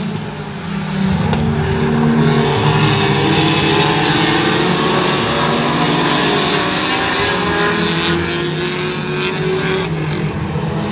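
A pack of pure stock race cars running at racing speed around a short oval. Several engines overlap with shifting pitches, growing louder about a second in as the cars pass.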